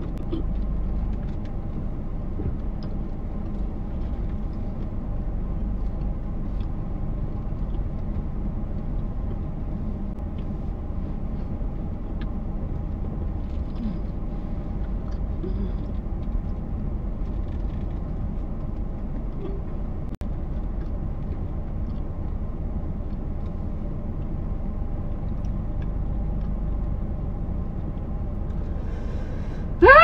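Steady low rumble of a car's engine and road noise, heard from inside the cabin while the car is being driven.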